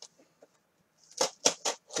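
Folding knife blade slicing through packing tape on a cardboard box: a quiet stretch, then about four short scratchy rasps in quick succession in the second half.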